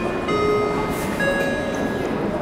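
Airport public-address chime: two bell-like notes, a lower one about a third of a second in and a higher one about a second in, both left ringing over the hum of the terminal.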